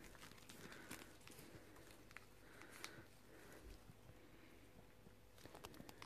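Near silence with a few faint clicks and rustles from a small plastic cosmetic tube being handled.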